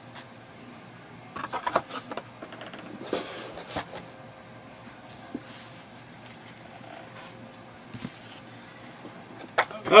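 Cardboard card boxes and cards being handled and set down on a table mat: scattered light knocks and rustles, clustered about one and a half seconds in and again around three to four seconds, with a short rustle near the end.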